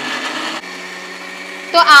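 Electric mixer grinder running, grinding chopped onion pieces into a paste; the sound drops to a quieter steady hum just over half a second in.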